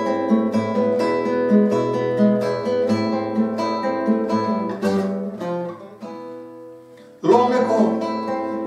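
Classical nylon-string guitar playing a song introduction of plucked notes and ringing chords that dies away about six seconds in; a man's voice then comes in near the end, singing over the guitar.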